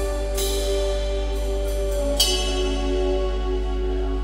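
Live band of electric guitar, bass guitar, keyboard and drum kit playing a slow passage of long held notes, with a cymbal crash about two seconds in.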